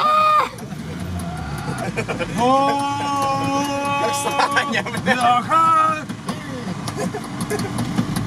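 Men shouting inside a moving off-road vehicle's cab, with one long drawn-out yell a couple of seconds in, over a low engine rumble.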